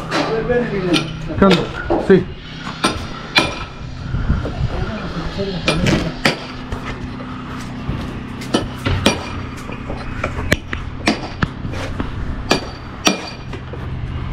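Masonry hand tools striking stone blocks: irregular sharp clinks and knocks, sometimes several close together, over a steady low machine hum.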